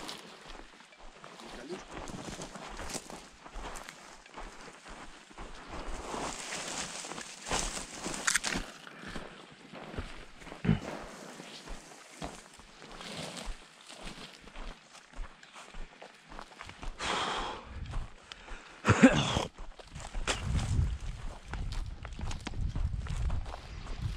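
Footsteps on dry, stony ground and brushing through pine scrub, irregular scuffs and crackles, with a louder scuff a little before the end and a low rumble in the last few seconds.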